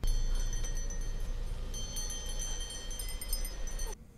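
Many small bells ringing together in a horror-film soundtrack, clear high tones over a low rumble. More ringing joins about two seconds in, and it all cuts off suddenly at the end.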